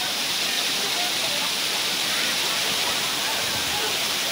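Water cascading over a stone dam weir, a steady rushing roar, with faint voices of bathers here and there.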